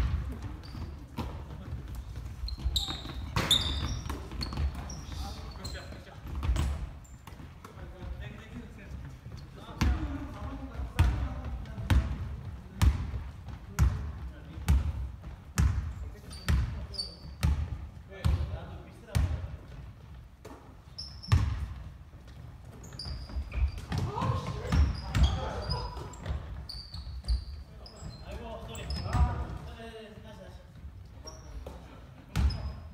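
Basketball dribbled on a hardwood gym floor, its bounces coming evenly about once a second through the middle stretch, with short high sneaker squeaks and players calling out in a large, reverberant gym.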